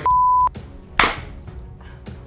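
A short, steady edited-in beep tone lasting about half a second, followed about a second in by a single sharp smack.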